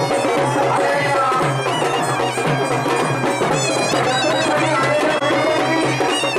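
Traditional Maharashtrian folk music played live, with a reedy wind instrument carrying the melody over a steady drum beat.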